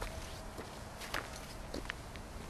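Footsteps on dry ground and grass: a few uneven, crunching steps over a steady outdoor background.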